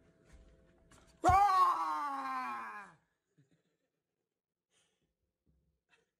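A sudden loud drawn-out vocal cry that falls steadily in pitch and fades out over nearly two seconds.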